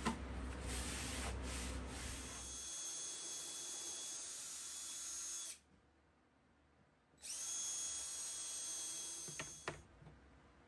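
DeWalt cordless drill driving wood screws through wooden rails in two runs with a steady high whine: the first stops about halfway through and the second starts a couple of seconds later, with a few clicks as it ends. Before that, for the first couple of seconds, a steady hiss over a low hum.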